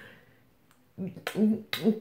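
About a second of near silence, then a woman talking, with one short sharp click among her words near the end.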